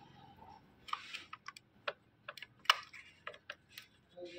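Plastic parts of an Epson L805 print head and carriage being handled: a brief scrape about a second in, then about a dozen small, sharp, irregular clicks and taps, one much louder than the rest about two-thirds of the way through.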